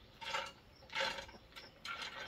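Wood pellets being poured into the smoke box of a Ninja Woodfire outdoor grill, rattling in three short bursts.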